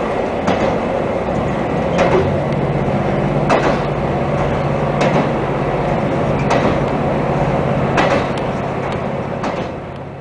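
KiHa 261 series diesel railcar running at speed, heard from inside the front car: a steady rumble, with a sharp click from the wheels crossing rail joints about every second and a half. A low steady engine drone comes in about a second and a half in, and everything fades near the end.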